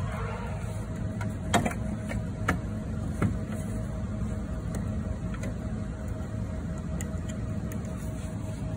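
A few light clicks and knocks, three in the first few seconds, from the scrubber's controller and its hardware being handled, over a steady low hum.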